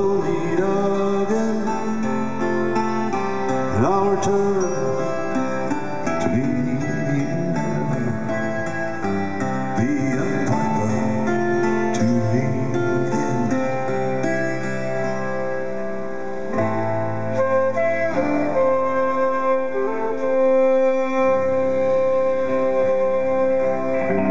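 Live band playing an instrumental passage between sung verses, acoustic guitar and other plucked strings carrying a slow, folk-tinged melody with sustained notes. It is heard from among the audience in a large hall.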